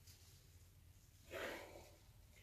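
Near silence: room tone, with one faint, short hiss about one and a half seconds in.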